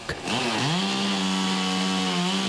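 Chainsaw revving up a moment in, rising in pitch, then held steady at full throttle.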